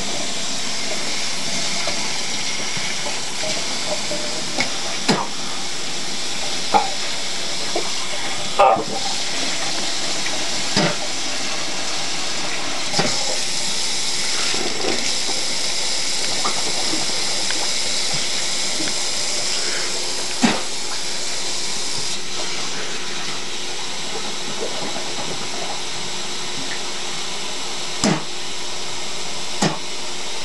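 Kitchen tap running steadily into a pan in a steel sink, broken by about eight short coughs and spits, the strongest about nine seconds in, as cinnamon is cleared from a mouth after choking and vomiting.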